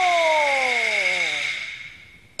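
A male opera voice drawing out one long syllable, a stylised hesitant '这个…' ('well, this…'), in a single held tone that slowly falls in pitch and fades out about a second and a half in. A faint steady high tone sits underneath.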